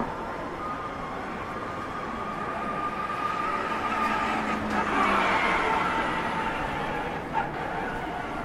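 A small motor vehicle, a tuk-tuk, passes close by on the street. Its steady whine grows louder to a peak about five seconds in and then fades, over the general noise of a busy pedestrian street.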